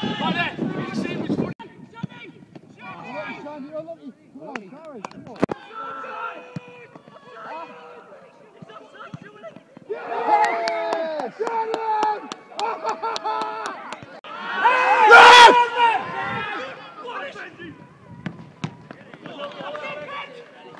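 Shouting voices of footballers and spectators on the pitch, rising to one loud shout about three quarters of the way through, with a single sharp knock about five seconds in.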